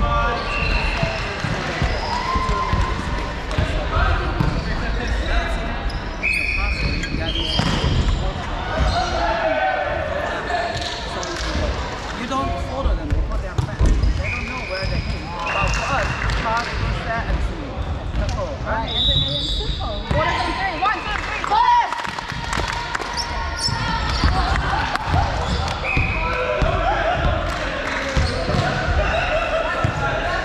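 Indistinct voices and chatter echoing in a large sports hall, with balls bouncing on the wooden floor and occasional brief high squeaks.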